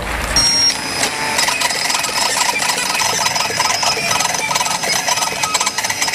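Craft ROBO desktop cutting plotter at work cutting holographic foil: its motors whine in steady tones that shift in pitch as the blade carriage and rollers move, over quick fine ticking.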